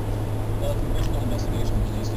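Inside a moving car's cabin: steady low engine and road rumble, with faint talk from the car radio underneath.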